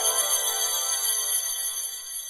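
A sustained, shimmering, bell-like magic sound with bright high ringing tones, beginning to fade near the end.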